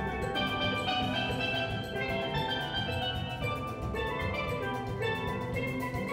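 Steel band playing: steel pans struck with mallets in a quick run of ringing notes and chords, over a fast, steady percussion beat.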